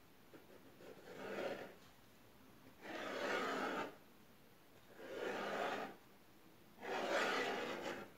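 A small kitchen knife drawn through puff pastry spread with cream cheese, against the baking paper beneath, cutting slits across the centre: four strokes of about a second each, with short pauses between.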